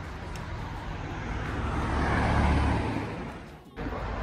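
A car passing by on the road: its noise swells to a peak about two and a half seconds in, fades away, and cuts off suddenly near the end.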